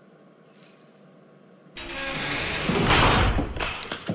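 Sliding jail-cell door sound effect: after a quiet start, a noisy slide with a heavy low rumble sets in suddenly about halfway through, swells, and fades toward the end.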